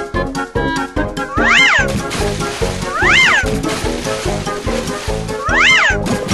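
Upbeat children's cartoon music with a steady beat. Three swooping tones that rise and fall, a little like a meow, come about every second and a half.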